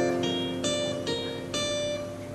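Acoustic guitar played solo, single picked notes struck about every half second and left ringing over a held chord.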